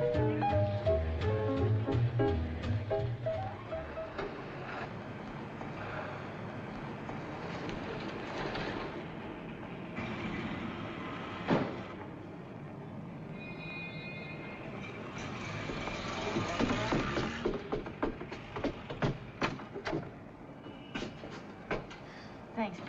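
Jazz dance-band music with drums, ending about four seconds in. A noisy stretch follows, with a sharp knock near the middle and a row of clicks near the end.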